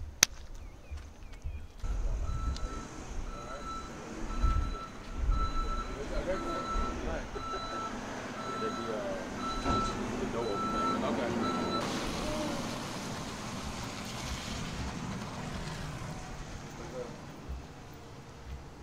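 A vehicle's reversing alarm beeping evenly, about twice a second, for some nine seconds before it stops, under faint background voices. It follows a single sharp slam of a car door at the start.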